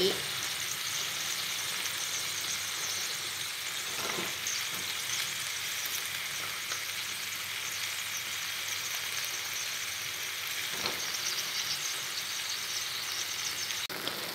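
Eggplant and minced pork sizzling as they stir-fry in hot oil in a metal pot, a steady even hiss. There are two faint brief knocks from the stirring, about four seconds in and again near eleven seconds.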